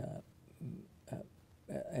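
A man's hesitation sounds: a short "uh" and a few brief, low, wordless voice noises with quiet gaps between them, then speech starts again near the end.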